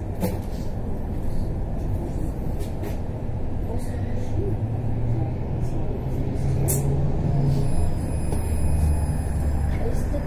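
Cabin noise of a moving electric tram: a steady low rumble with a low hum that grows stronger past the middle, and scattered light clicks and rattles.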